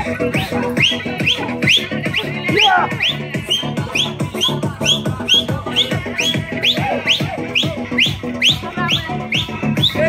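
Electronic dance music played loud over a sound system: a steady beat with a short rising whistle-like note repeating about three times a second.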